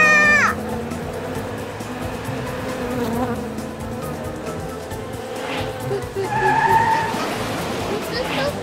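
Cartoon sound effects: a small car speeding away with a tyre skid, then the steady drone of a swarm of bees buzzing.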